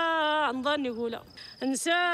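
A woman singing an Amazigh song unaccompanied, in long held notes that bend and waver. She breaks off for a breath about a second and a quarter in and takes up the line again just after a second and a half.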